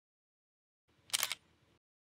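A DSLR camera shutter firing once, a quick double click about a second in.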